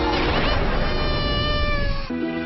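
A dramatic sound-effect swell: a rushing wash with quick gliding tones at first, then long tones that slowly sink in pitch, cutting off at the end.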